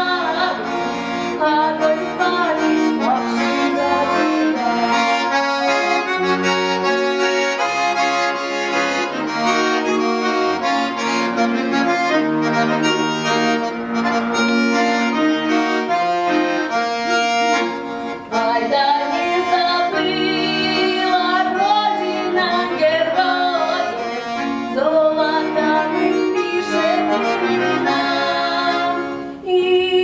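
Bayan (Russian chromatic button accordion) playing a folk-song accompaniment, with full chords over bass notes. A girl's singing voice is heard over it in places, mostly in the second half.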